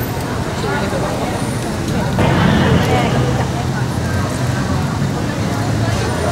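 Crowd voices talking over one another, getting louder about two seconds in, over a steady low hum.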